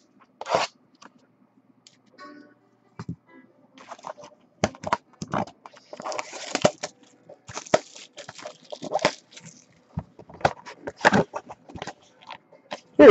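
Cardboard trading-card box being handled and torn open. A few sharp clicks come first, then from about four seconds in a dense run of crackling, crunching and tearing.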